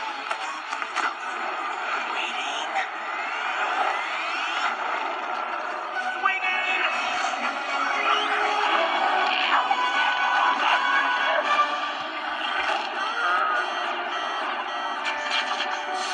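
Animated-film soundtrack, music with sound effects, playing through laptop speakers and picked up by a nearby microphone, so it sounds thin with no bass.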